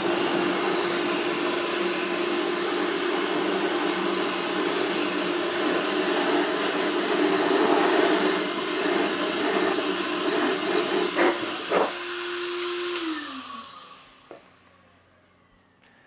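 Handheld blower running steadily, blowing rinse water off the inside barrel of a wheel: a rushing air noise with a constant motor whine. It is switched off about thirteen seconds in, and its pitch falls as it spins down and fades out.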